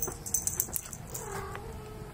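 A Scottish Straight Longhair kitten giving one short, quiet meow about a second in, after a few light clicks and rustles.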